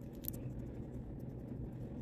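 Quiet room tone: a steady low hum from a running ceiling fan, with a few faint light ticks from handling a small makeup tube.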